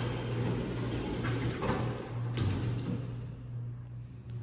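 Antique elevator door sliding on its track: a rough rumbling noise with a few surges that fades out after about three seconds, over a steady low machine hum.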